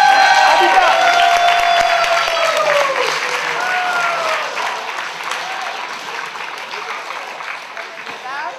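Theatre audience applauding and cheering, with several long whoops that slide down in pitch over the first few seconds; the applause then fades away gradually.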